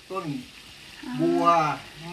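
Speech: a voice saying two short words, the second drawn out, over a steady background hiss.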